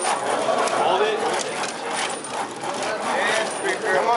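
Shake table shaking a wooden model tower, which rattles and clicks continuously, with people's voices over it.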